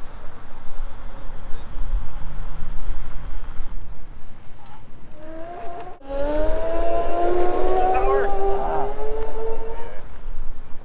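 Whine of a Boosted Rev electric scooter's motor, rising slowly and steadily in pitch as the scooter gains speed, louder after about six seconds in. Wind rumble on the microphone runs underneath.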